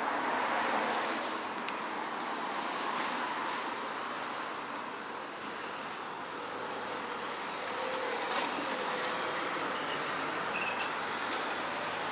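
Road traffic on a town street: cars passing with a steady rush of engine and tyre noise.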